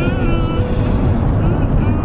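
Steady low road and engine rumble heard inside a moving car's cabin.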